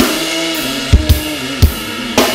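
Live band music in an instrumental break: the low bass drops out, leaving a held synth note and cymbal hiss, with three hard drum hits in the second half.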